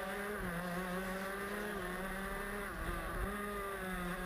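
Honda two-stroke shifter kart engine heard on board, running hard at racing pace. Its pitch holds fairly steady, with brief dips a few times as the throttle comes off for corners.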